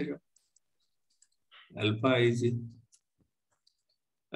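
A man's voice speaks one short phrase about halfway through. Otherwise it is near silence, with a few faint clicks.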